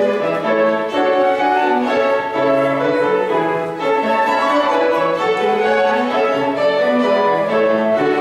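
A flute, violin and piano trio playing classical chamber music together, the melody lines moving continuously over the piano.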